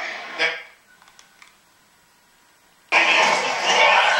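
Sound of a taped TV broadcast played back: the commentary breaks off into near silence with a few faint clicks, then about three seconds in a loud, even rushing noise cuts in suddenly.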